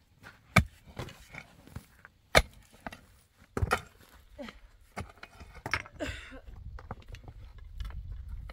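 A pickaxe striking hard, dry, stony ground, about five sharp blows spaced irregularly one to two seconds apart. A low rumble comes in near the end.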